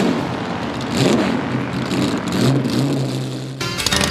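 Motor-vehicle engine sound effect, a car passing and revving with a sweep in pitch about a second in, then running steadily, laid over the tail of theme music. Near the end it gives way to a fast rattle of clicks.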